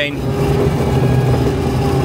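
Claas Dominator combine harvester running steadily while cutting barley, heard from inside the cab: an even engine and threshing drone with a low hum and a steady higher tone over it.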